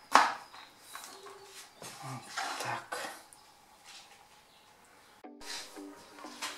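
Kitchen knife chopping a red chili pepper on a wooden cutting board: several sharp, irregularly spaced chops in the first three seconds, then quiet. Background music comes in suddenly near the end.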